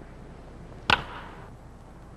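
A wooden baseball bat cracks once against a pitched ball about a second in, a single sharp hit with a short ringing tail that puts the ball up as a high fly. A faint steady hiss runs underneath.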